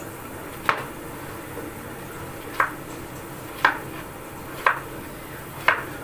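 Kitchen knife cutting slices off a soft block and clicking against the plate beneath: five sharp taps, roughly one a second.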